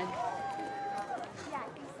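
A drawn-out "yeah" and a couple of spoken words over the background murmur of an outdoor crowd.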